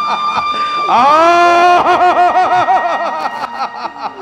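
A stage actor's loud theatrical laugh. It starts with a held cry that sweeps up in pitch about a second in, then breaks into a fast run of 'ha-ha-ha' pulses, about five a second, and fades near the end.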